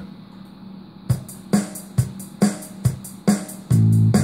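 Arranger-keyboard backing track playing through speakers: a drum-machine beat of kick, hi-hat and snare at about two hits a second starts about a second in. A sustained low instrument part, bass or guitar, comes in loudly near the end.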